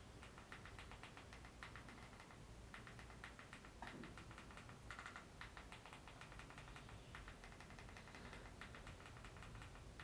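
Faint clicks of a TV remote control's buttons, pressed in short quick runs with pauses between.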